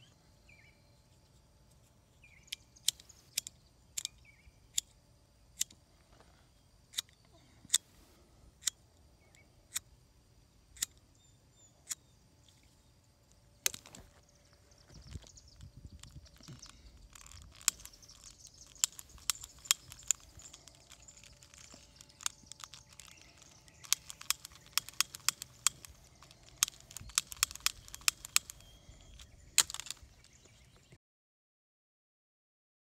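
Lighter igniters being clicked over and over without catching, worn-out lighters that won't light. Single sharp clicks come about once a second at first, then quicker runs of clicks in the second half.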